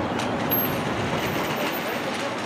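Steady city street traffic noise.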